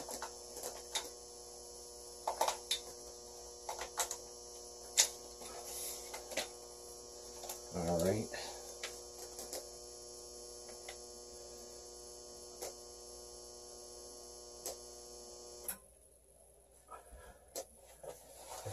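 Steady electrical hum with a buzz that cuts off suddenly about sixteen seconds in, with scattered light clicks and a brief voice near the middle.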